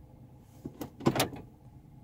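A few sharp clicks, then a short clatter about a second in: the car's gear lever being moved into reverse.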